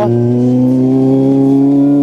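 Kawasaki Z800's inline-four engine running steadily on the move, its pitch rising slowly under light throttle.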